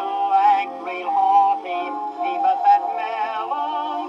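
A male tenor singing a 1913 popular song with instrumental accompaniment, on an acoustic-era record. The sound is thin and boxy, with no deep bass or bright top, and the voice has a wavering vibrato.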